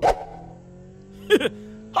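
A quick swish as the scene changes, followed by a faint steady background hum and a short laugh near the end.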